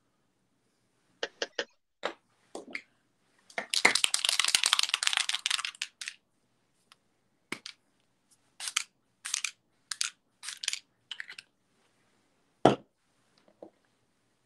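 Makeup products and small containers being handled on a table: a few clicks and taps, a rustling scrape lasting about two and a half seconds, a run of lighter clicks, and one heavier knock near the end.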